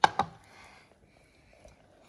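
Two sharp knocks about a fifth of a second apart as a stainless steel saucepan is set down on the worktop, then only faint room noise.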